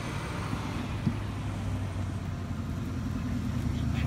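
Road traffic: a steady motor-vehicle rumble that builds louder near the end, as a vehicle draws closer.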